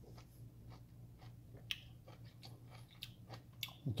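Faint chewing of a juicy mineola segment, with scattered small wet clicks from the mouth.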